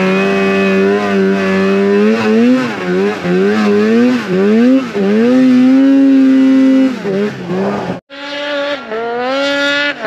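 Mountain snowmobile engine revving up and down with the throttle, its pitch rising and falling several times and then held high for a couple of seconds. Near eight seconds the sound cuts off abruptly and a snowmobile engine is heard again, revving up in pitch.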